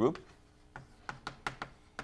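Chalk writing on a blackboard: a quick, irregular series of sharp taps and short scrapes as letters are written.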